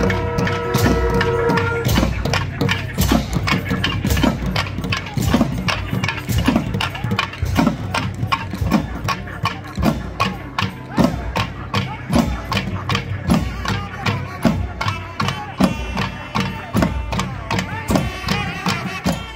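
Periya melam temple ensemble: thavil barrel drums beating a fast, steady rhythm with hand cymbals, about three to four strikes a second. A held nadaswaram note sounds over the drums and stops about two seconds in.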